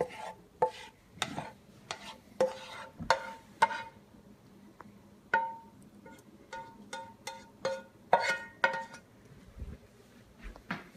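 A slotted spatula scraping and knocking against a nonstick frying pan of garlic in oil, a dozen or so irregular knocks, each leaving the pan ringing briefly.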